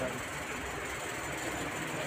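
A steady mechanical hum with an even hiss, with no distinct events.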